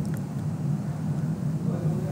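A steady low background hum with no other distinct sound, during a pause in speech.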